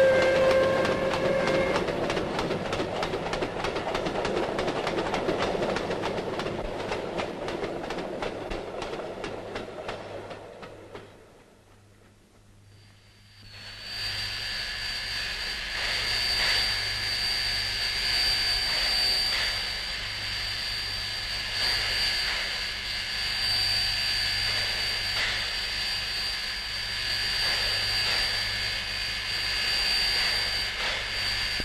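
Steam locomotives: a short whistle blast at the start, then a passing steam train running noisily and fading away over about ten seconds. After a brief near-silent gap, a steady hissing with a high whistling tone from steam escaping off a locomotive.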